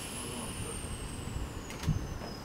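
Electric train out of sight at the station: a thin high whine falling slowly in pitch over a hiss, with two sharp clicks near the end, the sound of the train slowing.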